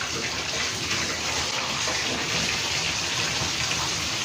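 Water running steadily into a bathtub from the tap.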